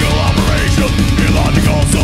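A heavy metal band playing loud live, with distorted electric guitars and drums.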